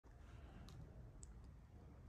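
Near silence: faint room tone with two or three faint clicks.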